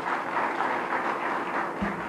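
Audience applauding in a hall, a dense steady clatter of many hands, with a short thump near the end.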